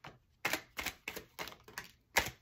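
Tarot cards being dealt from the deck onto a cloth-covered table and flipped over: a quick run of about seven crisp snaps and taps, starting about half a second in.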